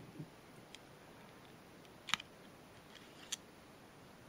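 Small sharp clicks of a Swiss Army knife's tweezers being pulled from their slot in the handle: one clear click about two seconds in and a fainter one about a second later.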